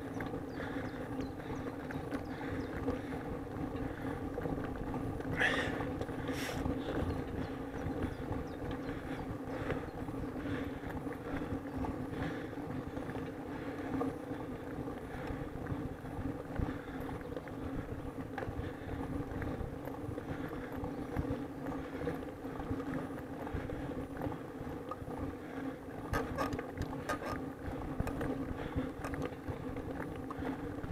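A vehicle engine running at a steady, unchanging pitch while under way, over a low rumble of wind and road noise. A few brief clicks come about five seconds in and again near the end.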